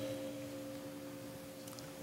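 Quiet room tone carrying a faint, steady hum made of two held tones, a low one and a higher one, with no change through the pause.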